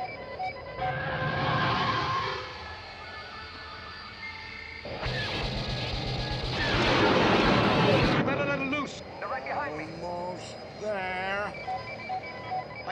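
Space-battle film soundtrack: orchestral score under the electronic beeps of an X-wing targeting computer and the engine roar and laser blasts of TIE fighters attacking. The loudest part is a long roar about five to eight seconds in.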